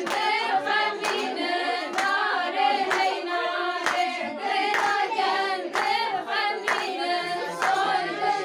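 Group of women singing a Kurdish song together, with hand claps keeping a steady beat about twice a second.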